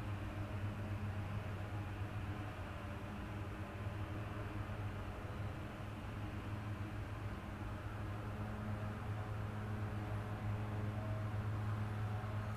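A steady low hum with a soft hiss over it.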